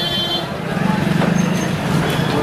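Street traffic with a vehicle engine running steadily. A horn sounds briefly and stops about half a second in, with voices mixed in.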